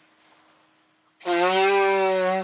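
A man blowing his running nose hard into a tissue: one loud, steady honk lasting just over a second, starting about a second in.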